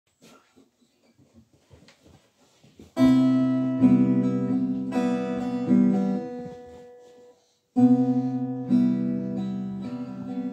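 Acoustic guitar: after about three seconds of faint rustles and knocks, slow chords are strummed and left to ring out as part of a chord progression. There is a short break just after seven seconds before the next chord.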